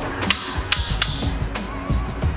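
Manual resistance knob on an elliptical cross-trainer being turned by hand, clicking through its detent levels: three sharp clicks in quick succession in the first second, then fainter ones.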